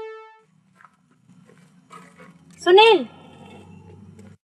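Synthesizer music fading out, then a low steady hum and a single loud short cry, about three quarters of the way in, that rises and then drops in pitch.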